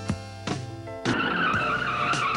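Car tyres screeching in a long skid. The screech cuts in over the music about a second in and holds, wavering.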